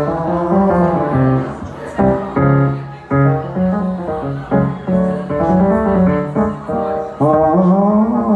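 A man singing with long held notes to his own electronic keyboard accompaniment, amplified through a PA.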